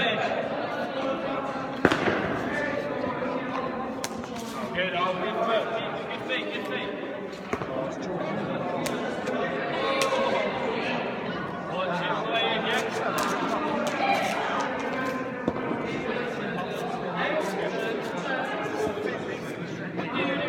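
Indistinct voices chattering in a large, echoing hall, with a few sharp knocks of a cricket ball, the loudest about two seconds in and another about ten seconds in.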